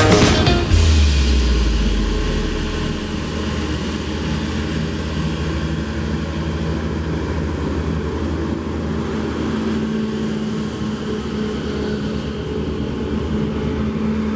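Fendt tractor's diesel engine running steadily under load, with a low rumbling drone, after electronic dance music ends about a second in.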